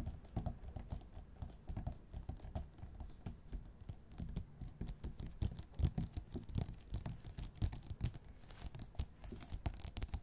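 Fingertips and fingernails tapping and scratching on a wood-grain tabletop: many quick, irregular light taps and scrapes, close to the microphone.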